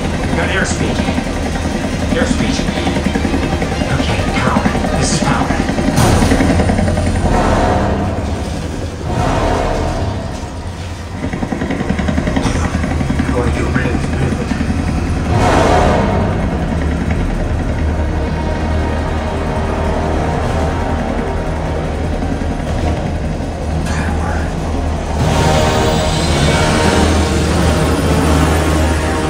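A film soundtrack of a helicopter action scene played loud through a 7.2.4 Atmos home theater system: music score, dialogue, helicopter and engine noise over heavy subwoofer bass, with several sharp booms and impacts.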